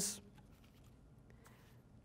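A speaker's word trails off, then there is a pause of near silence with room tone and a few faint small ticks.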